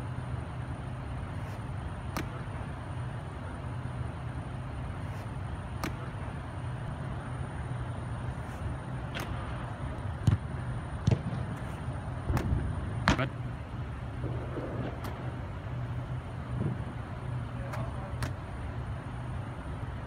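Steady low hum inside an air-supported indoor training dome, with sharp slaps and knocks scattered through it. The loudest come in a cluster about ten to thirteen seconds in.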